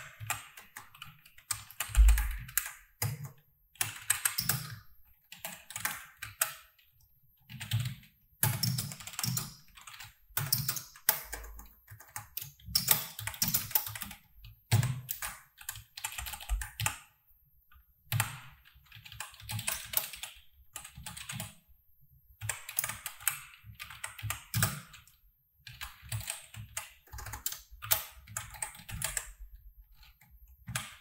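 Typing on a computer keyboard: quick runs of keystrokes separated by short pauses, with one heavier thump about two seconds in.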